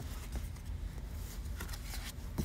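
Faint handling noise of a board book and the phone recording it: soft rustling with a few light clicks, over a steady low room rumble.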